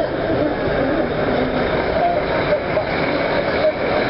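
Steady street traffic noise with indistinct voices of people close by.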